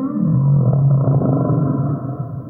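Recorded whale song: one long, low moaning call that slides down in pitch at the start and then holds steady.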